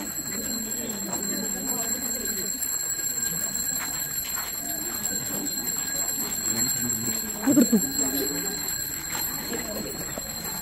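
Crowd of people chattering with no clear words, one voice rising loudly about three-quarters of the way through. A steady high-pitched whine sounds throughout.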